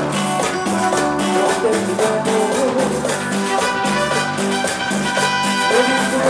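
Live Latin dance band playing with keyboard and drums over a steady, even beat.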